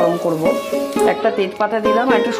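Hot mustard oil sizzling in a steel wok as a spatula stirs it, with a sharp click about a second in. Background music plays over it and is the louder sound.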